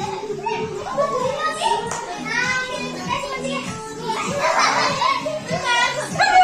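Several children chattering and calling out at play, over music playing in the background.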